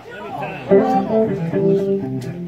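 Guitars begin playing about two-thirds of a second in: plucked notes ringing out as a song starts, after a short spoken bit at the start.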